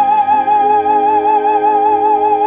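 An operatic soprano holds one long high note with a wide, even vibrato. Softer sustained lower accompaniment chords come in underneath about half a second in.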